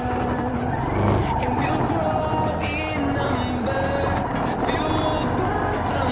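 Background music with a steady beat, over a motorcycle engine running underneath.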